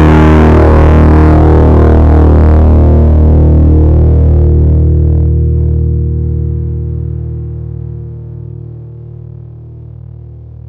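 Fuzz-distorted electric guitar from a Strat's bridge single-coil pickup, a struck chord sustaining loudly and then fading smoothly from about halfway through. It is passing through a downward expander, so the tail dies away gradually rather than being cut off by a gate.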